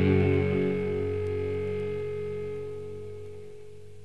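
The closing chord of a rock song, electric guitar and band, held and ringing out as it fades steadily away.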